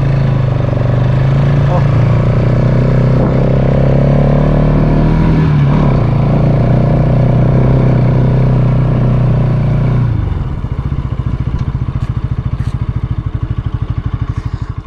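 Motorcycle engine running steadily under way. About ten seconds in the throttle closes and the engine note drops to a lower, evenly pulsing putter.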